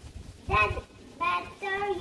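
A young girl's voice singing three short held notes.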